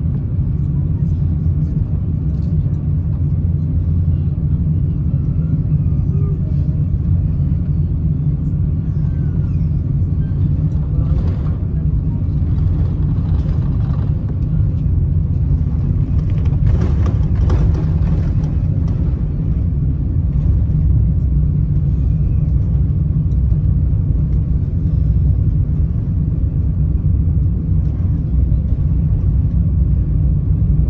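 Cabin noise of an Airbus A350-1000 taxiing: a steady low rumble from its Rolls-Royce Trent XWB engines at idle and the airframe rolling along the taxiway.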